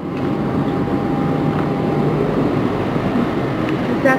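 Steady outdoor street background noise, a low rumble like traffic, fading up at the start.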